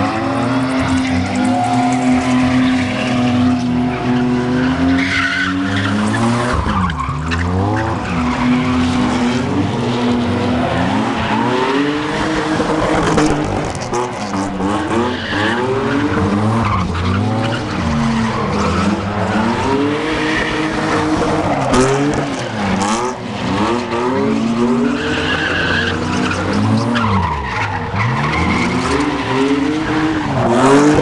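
Car engine revving hard, held at high revs for several seconds and then rising and falling again and again, with tyres squealing as the car spins donuts and drifts in circles.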